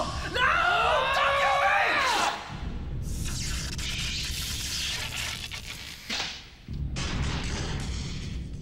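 Animated-film soundtrack: a high, wavering cry or tone for about the first two seconds, then a long hissing, crackling sound effect of electric sparks over a low, steady musical drone.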